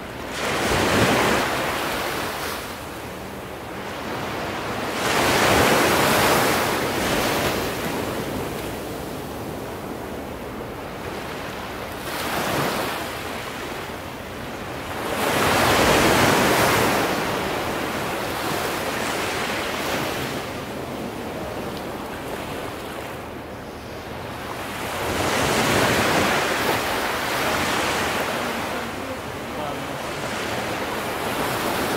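Ocean surf: waves breaking and washing in one after another, five surges, each rising to a crash and then fading back into a steady hiss. The biggest come about 1, 6 and 16 seconds in.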